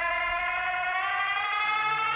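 A sustained electronic tone in the band's music, its pitch gliding slowly upward like a siren. Low held notes come in near the end.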